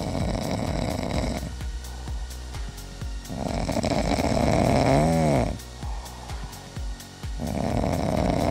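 Sleeping cats snoring: three long snores a few seconds apart, the middle one loudest, ending in a rising-and-falling tone.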